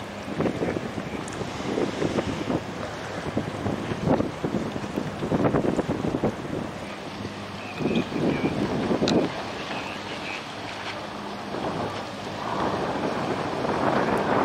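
Wind gusting on the microphone over the low, steady running of boat engines on the river.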